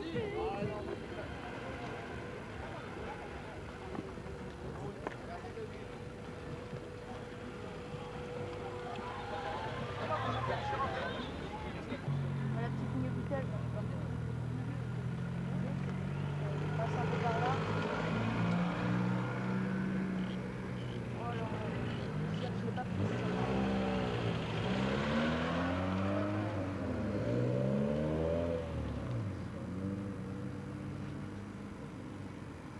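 A car engine running steadily from about twelve seconds in, then revved up and down several times near the end, with people talking in the background.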